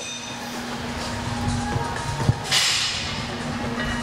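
Gym room sound with background music and a steady hum. A single knock comes about two seconds in, followed by a short burst of hiss.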